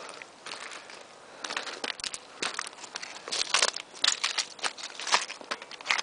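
Footsteps on loose scree: irregular crunching and clattering of broken rock shifting underfoot. It is sparse at first and gets busier from about a second and a half in.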